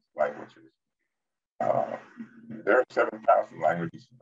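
Only speech: a man talking, with a pause of about a second near the start.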